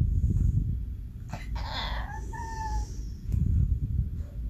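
Small dog, a Yorkshire terrier, giving a short high-pitched whine around the middle, over a low rumbling noise close to the microphone.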